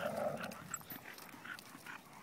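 Faint sounds of dogs playing on wood-chip ground: a short noisy rustle at the start, then soft, scattered scuffles.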